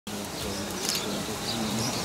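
A flying insect buzzing, with short high bird chirps.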